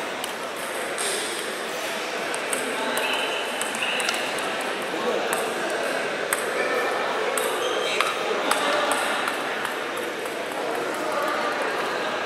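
Table tennis ball being hit back and forth in a rally: a series of sharp, irregular clicks of ball on bat and table, over the murmur of voices in a hall.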